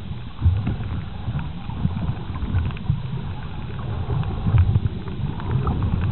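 Muffled underwater sound from a submerged camera: water moving around the camera gives an uneven low rumble, with scattered faint crackling clicks.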